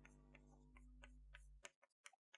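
Faint, short ticks of chalk striking and writing on a blackboard, about three a second, over a faint steady room hum.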